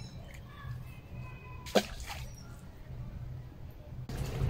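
Small birds chirping faintly over a low, steady background hum, with one short, sharp squeak that falls in pitch a little before halfway.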